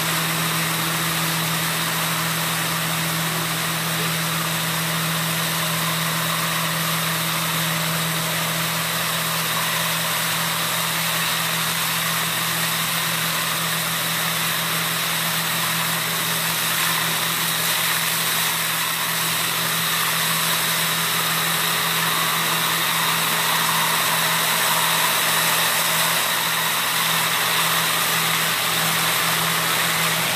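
Hasatsan H2050 hazelnut vacuum harvester running steadily while its three suction hoses pick up nuts: a constant machine drone with an even rushing hiss and no change in pace.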